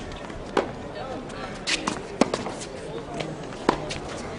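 Tennis rally on a hard court: sharp pops of the ball struck by racquets and bouncing, about four in all, over faint crowd voices.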